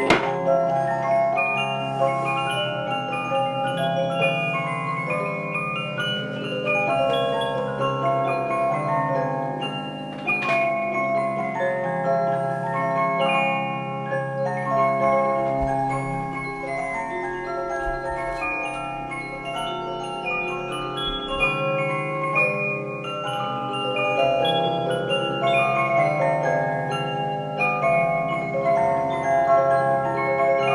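Nicole Frères Swiss cylinder music box of about 1830, walnut-cased, playing a tune with its lid closed: a continuous run of plucked, bell-like comb notes over a sustained lower accompaniment. The lid shuts with a knock at the very start.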